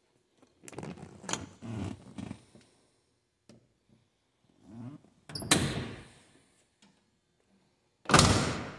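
Vinyl front bucket seat of a 1970 Dodge Dart Swinger being handled: the seat back is released and tipped forward with clicks, creaks and rustles. About five and a half seconds in it swings back and latches with a sharp thunk.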